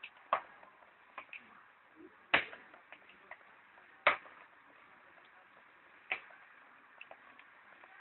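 Plastic keypad buttons of a Panasonic desk telephone clicking as they are pressed one at a time, a sharp click every second or two. The buttons have just been cleaned of the grease that made them stick.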